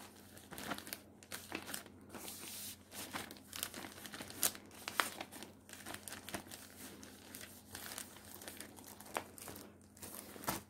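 Clear plastic sheet protector crinkling and rustling as it is handled and a crocheted motif and paper sheet are slid into it, in an irregular run with a few sharper crackles.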